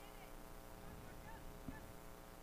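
Quiet lull: a steady electrical hum with a few faint, short calls in the background.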